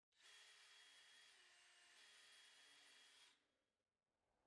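Faint whine of a power drill with a concrete bit, run at high speed, boring a bolt hole through a plaster mother mold. The pitch dips briefly about a second and a half in and comes back up, and the drill stops a little after three seconds in.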